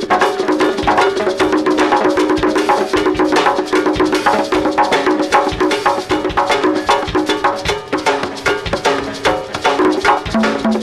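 A set of congas played by hand in a fast solo: a dense, unbroken stream of strokes, with the drums' pitched tones sounding steadily underneath.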